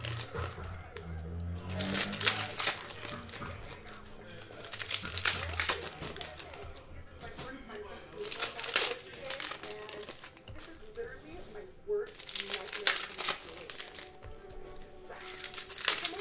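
Foil trading card pack wrappers crinkling and tearing as packs are opened by hand, in several separate bursts.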